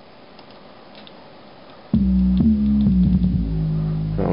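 Music from a beat in progress played back on studio speakers: about halfway through, low sustained synth or keyboard tones come in loud and hold, changing notes twice. Before that, only faint room hiss.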